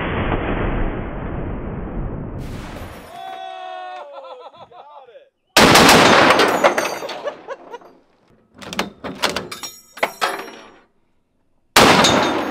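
A deep, muffled rumble for the first three seconds, then bursts of fire from a belt-fed machine gun: a loud burst about halfway in, a run of rapid shots a little later, and another loud burst near the end.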